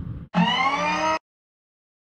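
A short pitched electronic tone with many overtones, gliding slightly upward for under a second, then cut off abruptly into silence. It follows the tail of a fading whoosh.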